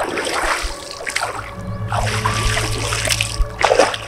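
Shallow river water splashing and sloshing in several short bursts as a person stirs it with her hands and moves through it, over background music.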